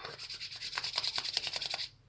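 Hands rubbed together briskly, palm against palm: a rapid dry swishing of about ten strokes a second that stops just before the end.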